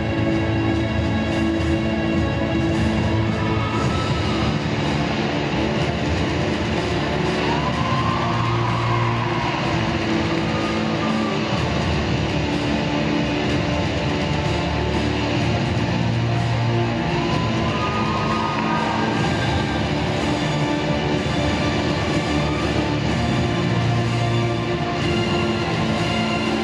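Accompaniment music for a rhythmic gymnastics hoop routine, playing steadily and loudly.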